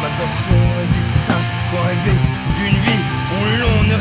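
Rock band playing an instrumental passage: a guitar line with sliding, bending notes over steady drum hits.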